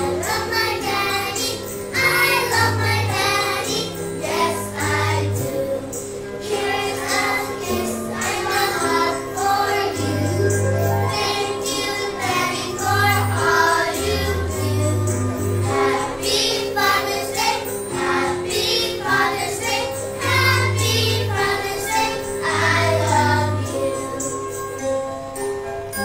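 A group of children singing a church song together, over instrumental accompaniment with held bass notes.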